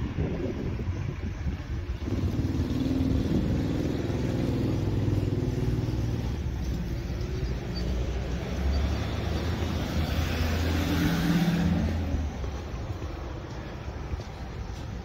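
A car's engine running as it drives along the street, coming up about two seconds in. The tyre and engine noise swells near the end, then drops away.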